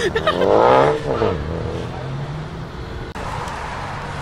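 Car engine revved hard while pulling away, its pitch climbing quickly and loudest in the first second, then falling as the throttle is lifted. Lower, steadier engine running follows.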